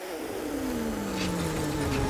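Cartoon sound effect of a big huff of blowing wind: a rushing whoosh with a tone sliding steadily downward, as the wolf's breath blows the house of blocks down.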